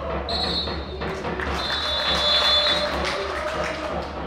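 Two long, high whistle blasts, a short one right at the start and a longer one about a second and a half in, over music and a general stadium wash.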